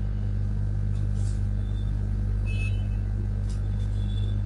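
Steady low electrical hum with faint hiss underneath, the background noise of the audio line.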